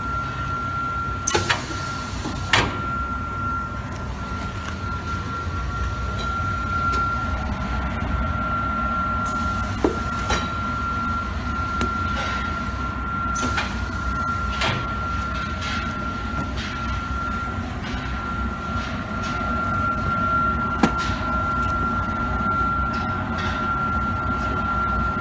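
Beseler shrink-wrap bundler and heat-shrink tunnel running: a steady machine hum with a constant high-pitched whine and a low rumble. Several short hisses break in, the first two a couple of seconds in, along with a few light clicks and knocks.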